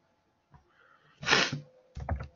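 A single short, hissing burst of breath from a person, about half a second long, a little past the middle.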